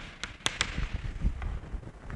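Chalk on a chalkboard as figures are written: a few sharp taps in the first half-second or so, then softer scraping. Low thuds follow, about a second in.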